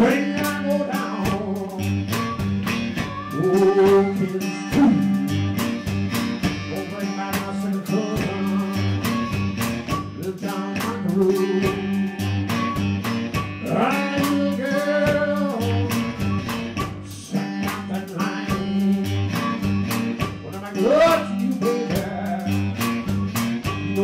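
Live blues band playing: guitar lines with bent notes over a repeating bass line and a steady beat.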